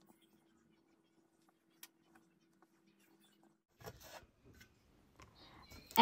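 Near silence: a faint steady hum for the first half, then faint room noise with a few light clicks in the last two seconds.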